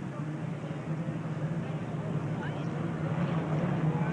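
Unlimited hydroplane racing boats running flat out on the water, a steady engine drone that grows slowly louder.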